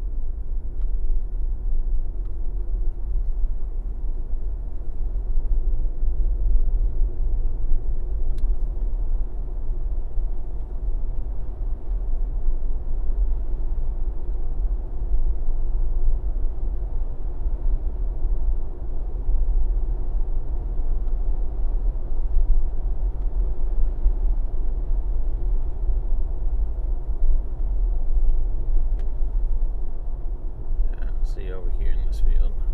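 Steady low rumble of road and engine noise inside the cab of a Ford Bronco driving along at about 35 mph.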